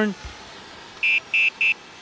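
Electric scooter's electronic horn beeped three times in quick succession, short high-pitched beeps starting about a second in.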